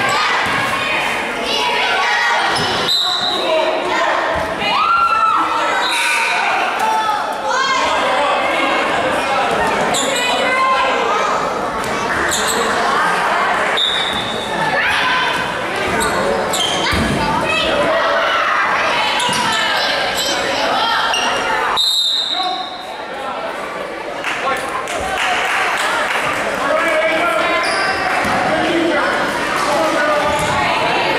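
Indoor basketball game: a basketball bounces on the hardwood gym floor, with short high squeaks and shouting voices from players and spectators, all echoing in a large hall.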